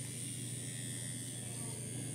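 Electric tattoo machine buzzing steadily, a low even hum.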